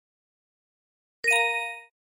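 A single bell-like chime sound effect about a second and a quarter in: one struck ding with several clear ringing tones that dies away within about half a second.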